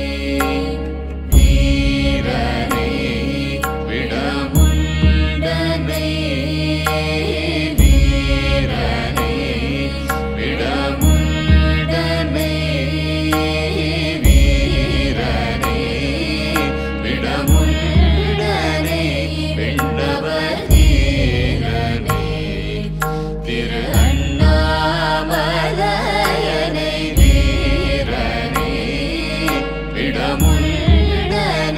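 Devotional background music: a chanted mantra sung over a steady drone, with a deep drum stroke about every three seconds.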